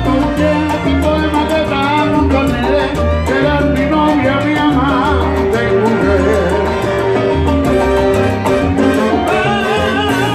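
A live salsa band playing, with congas and timbales keeping a steady rhythm under sustained instrumental notes.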